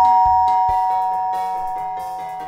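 Electronic doorbell chime ringing out: a 'ding-dong' of a higher tone then a lower one, struck just before and dying away slowly. Backing music with a steady beat plays underneath.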